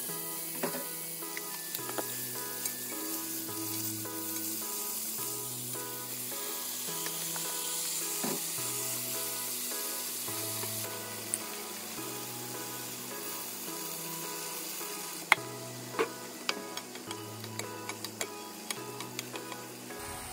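Fish pieces and cabbage sizzling in a frying pan, a steady hiss that is strongest in the first half, over background music with a stepping bass line. A few sharp clicks and pops come in the last few seconds.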